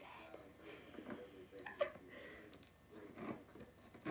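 Faint, quiet talk and murmuring between two people, with one short sharp click about two seconds in.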